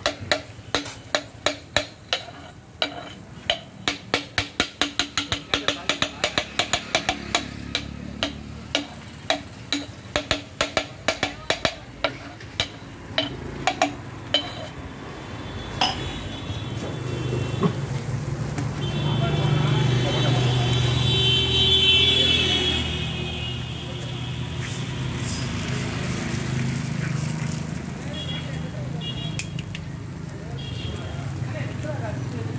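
A steel tumbler striking and pressing food on a flat iron griddle in a quick, regular clatter, about three to four strikes a second, which stops about fourteen seconds in. After that, a steadier humming noise rises and falls, loudest a little past the middle.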